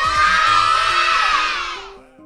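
A group of young children cheering and shouting all together, dying away near the end, over light background music with plucked notes.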